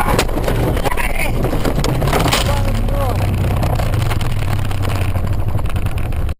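A car crashing, heard from inside the cabin: jolts and knocks, with people's voices crying out and the engine still running.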